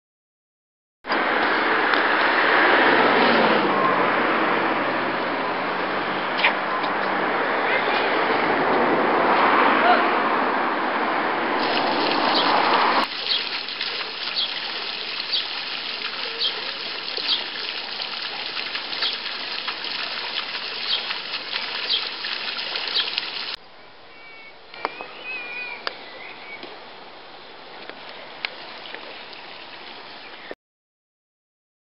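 Water splashing and gushing from a small stone fountain's jet: a steady hiss that drops in level twice at sudden cuts.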